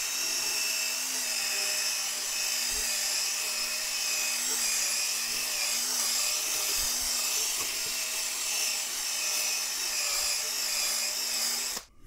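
Cordless drill spinning a round drill-brush attachment against a carpet floor mat: a steady motor hum under the scrubbing hiss of the bristles on the pile, working carpet cleaner into the fibres. It stops suddenly just before the end.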